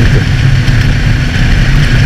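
Honda CB650F's inline-four engine running at a steady highway cruise, held at constant throttle, under a loud, steady rush of wind on the camera microphone.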